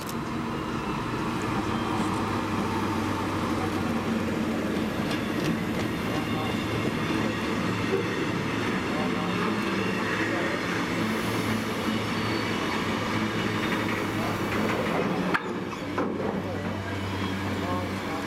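A Class 70 diesel locomotive's GE PowerHaul engine running as the loco passes close by, followed by its train of empty flat wagons rolling past on the rails. About 15 seconds in there is a sharp click, and the sound then falls away as the last wagon goes by.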